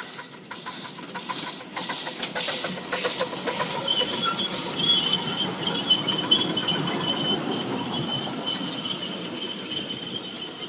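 One-third-scale Basseterre Sugar Estate steam locomotive passing, its exhaust chuffing about three beats a second until about five seconds in. A steady high-pitched wheel squeal then takes over, over the rumble of the riding cars rolling by.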